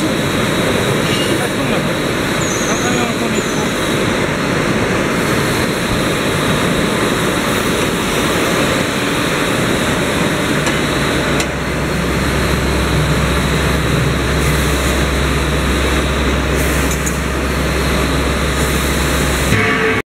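Loud, steady factory-floor machinery noise around a C/Z purlin roll forming machine. A steady low machine hum comes in about halfway through and holds.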